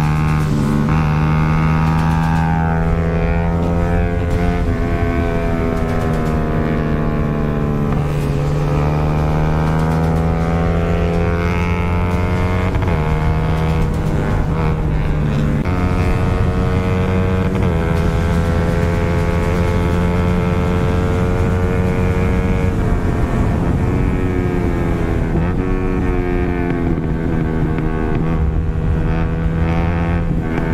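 Yamaha R15's 155 cc single-cylinder engine heard on board while riding, its revs repeatedly climbing and dropping back.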